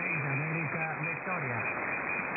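A man's voice on single-sideband from a distant amateur radio station on the 20-metre band, heard through a shortwave receiver. It sounds thin and telephone-like over constant band hiss, too noisy to make out the words.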